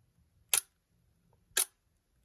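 Nikon DSLR shutter firing a one-second exposure: one sharp click as the shutter opens and a second click about a second later as it closes.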